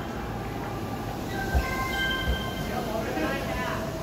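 E531 series electric train rolling slowly alongside the platform as it comes in to stop, with its wheels giving two low knocks over a rail joint about a second and a half and two seconds in.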